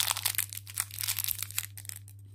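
Thin clear plastic bag around a small eraser crinkling as fingers handle it: a dense run of irregular crackles that thin out near the end.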